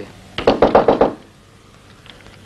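Rapid knocking on a wooden room door: a quick run of about six or seven raps, starting about half a second in.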